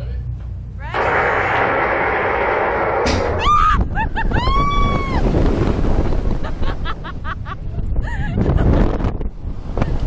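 A slingshot (reverse bungee) ride launching its two-seat capsule: a sudden loud rush of air about a second in as it is shot upward. Then the riders scream and whoop, with long rising-and-falling cries, and keep laughing and shouting over the wind rushing past the on-board microphone.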